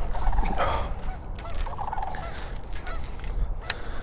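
Several short bird calls in the distance, repeating irregularly, over wind buffeting the microphone.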